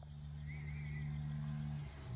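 An engine hum out of sight, steady and growing louder, that breaks off briefly near the end and comes back at a slightly different pitch.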